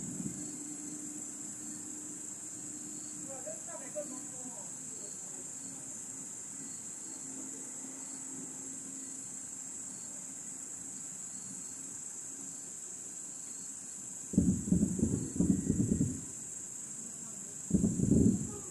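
Steady high-pitched chirring of crickets or other night insects. Near the end comes a run of loud low thuds lasting about two seconds, then another just before the end: distant fireworks shells bursting, heard well after their flashes.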